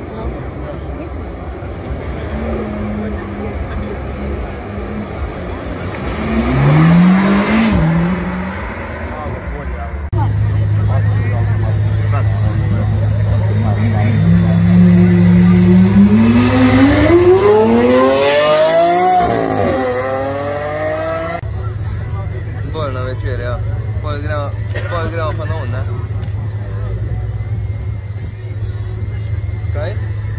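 Supercar engines accelerating hard, the note climbing in pitch: a short rise about seven seconds in, then a longer and louder climb from a Lamborghini Aventador's V12 from about the middle, which breaks near the end of the rise. Crowd voices can be heard over a steady low hum in the last third.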